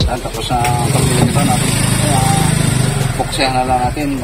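A man's voice over a small engine running steadily, its low buzz strongest in the middle of the clip.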